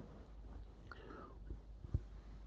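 A man's faint breathing and quiet, whispered murmuring close to a microphone, with a small click near the end.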